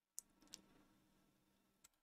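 Faint clicks of a computer mouse: two in quick succession in the first half second and one more near the end, over faint room tone.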